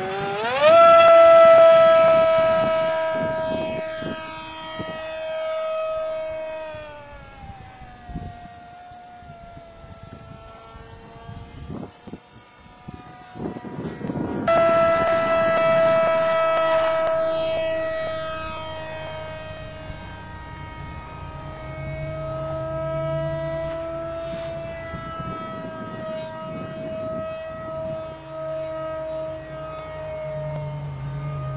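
Radio-controlled flying boat's motor and propeller whining as it runs on the water. The pitch jumps up sharply as the throttle opens about half a second in, holds, then falls away around seven seconds in. After a quieter lull the throttle opens again about halfway through, and the high whine holds, wavering slightly.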